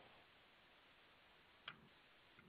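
Near silence, with one faint short click near the end.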